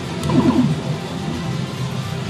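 Pachislot hall din: electronic machine sound effects and background music, with a cluster of short falling tones about half a second in and a few light clicks.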